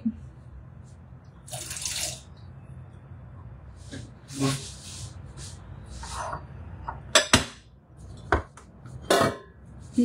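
Cooked red kidney beans tipped and scraped from a ceramic bowl into a Thermomix bowl: a few short wet sliding bursts, then three sharp knocks of kitchenware in the last few seconds as the Thermomix steaming basket is handled.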